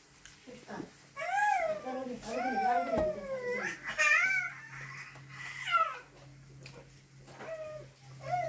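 A series of high-pitched cries, each gliding up and then down in pitch, come close together in the first half, with one more a little before six seconds in.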